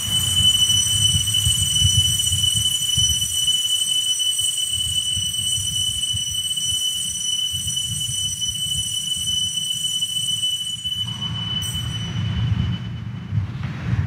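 Altar bells rung without pause at the elevation of the consecrated host, a steady high ringing over a low rumble that stops about a second before the end.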